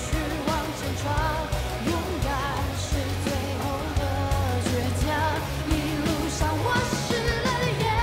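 Pop song with singing over a steady bass line.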